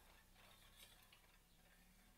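Near silence: a bicycle front wheel spinning freely, with faint ticking from the Shimano disc brake rotor lightly rubbing the pads of a caliper that is not centred.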